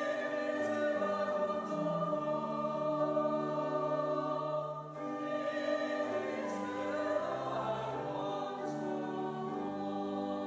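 Opening hymn sung by a church congregation to organ accompaniment: sustained chords that change every second or two.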